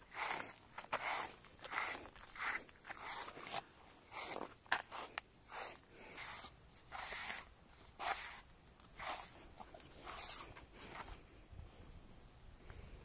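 Rustling strokes of a hand working through a horse's long mane, a short scratchy swish about every half second to second, growing fainter near the end.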